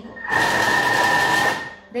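Thermomix food processor running its blade at speed 5 with a steady whine, chopping kale leaves in dressing in a short burst that stops after about a second and a half. The run is kept brief so the kale is chopped finer without being minced.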